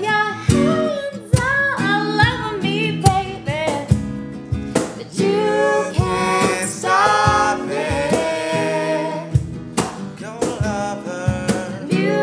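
Female lead vocal singing an R&B melody over strummed acoustic guitar and a cajón beat played by hand.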